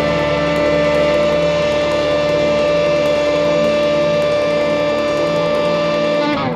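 Blues-rock band music: a chord with guitar held and ringing steadily.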